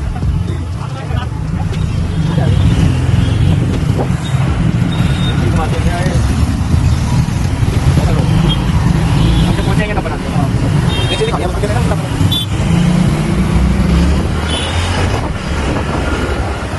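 Wind buffeting the microphone of a rider on a moving scooter, over the engine and road noise of scooters and cars in traffic.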